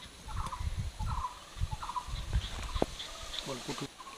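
Domestic fowl calling in the background, a string of short calls about once a second, over low rumbling and a single light clink of a metal ladle against the wok as syrup-soaked sweets are lifted into a bowl.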